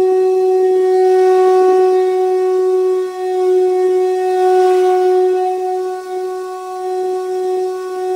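One long, loud note from a blown wind instrument, held at a steady pitch throughout and wavering slightly in loudness.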